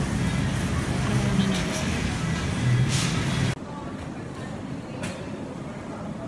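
Wire shopping cart rolling across a store floor, a loud rattling rumble that cuts off suddenly about three and a half seconds in, leaving quieter store background.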